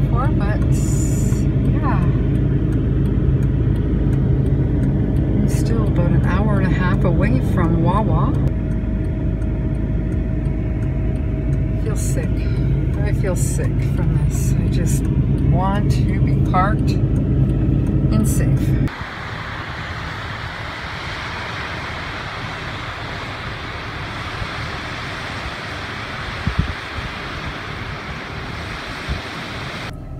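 Steady low drone of a van's engine and road noise heard inside the cab, with faint voice-like pitched sounds over it. About two-thirds of the way in it cuts off suddenly, and a quieter, even rushing noise follows.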